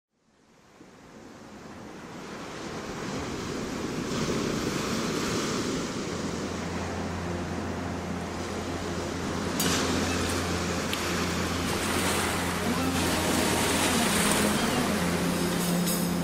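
Ocean waves washing in, fading up from silence and swelling and ebbing as a song intro, with a steady low bass drone joining about six seconds in.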